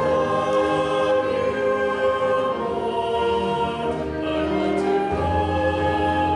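Small church worship ensemble performing: several voices singing in held notes, accompanied by piano and flute. A low bass note enters about five seconds in.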